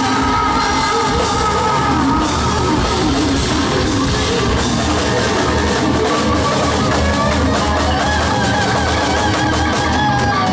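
Live hard rock band playing loud, with distorted electric guitars, bass and drum kit under a singer's voice.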